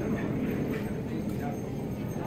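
Busy supermarket checkout ambience: indistinct chatter of cashiers and shoppers over a steady store hum, with light scattered knocks and clatter of groceries being handled at the registers.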